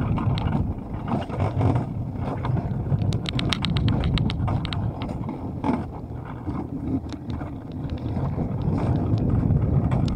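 Alpine coaster sled running down its steel tube track: a steady rumble of the wheels on the rails, with wind on the microphone. A quick run of clicks comes about three seconds in.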